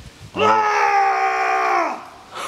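A man's long, drawn-out shout of "Nein!" in astonished disbelief, held for about a second and a half before the pitch falls away at the end.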